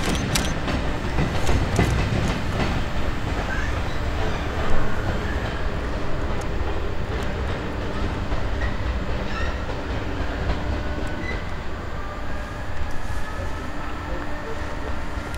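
DB Cargo Class 66 diesel locomotive, with its two-stroke V12 engine, running with its train of coaches over pointwork. A steady rumble with wheels clicking over rail joints and crossings, most densely in the first couple of seconds, and one sharper knock about five seconds in.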